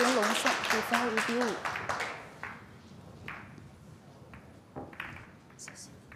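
Audience applause with a voice calling out over it, loudest at the start and dying away within about two seconds. A few scattered claps or clicks follow.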